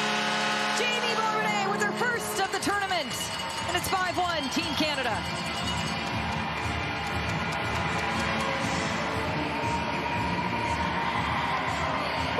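Arena goal horn sounding for the first couple of seconds, signalling a goal, over a crowd cheering and shouting, with music playing over the arena's sound system.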